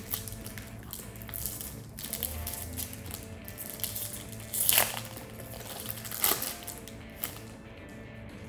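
Crinkling and rustling of a foil booster-pack wrapper being handled, loudest about five and six seconds in, over quiet background music.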